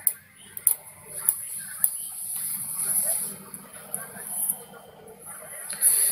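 Faint, indistinct voices in the background, with a few light clicks in the first two seconds and a steady high hiss.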